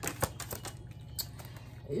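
Tarot cards being shuffled by hand: a quick run of crisp card clicks and slaps in the first half-second, then a few sparser clicks.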